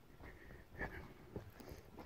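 Faint footsteps of a hiker walking on a dirt forest trail: a few soft steps, one a little under a second in and another about half a second later.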